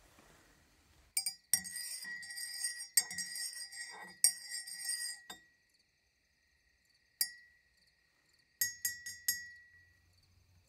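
Thin glass rod clinking against the inside of a mug as it stirs, each clink ringing on briefly: a busy run of clinks from about a second in to past the middle, one lone clink, then a quick few near the end.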